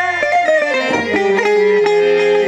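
Sindhi Sufi folk music played on plucked long-necked gourd-bodied string instruments (tamburo). It is instrumental: a run of plucked notes steps down in pitch over sustained ringing strings.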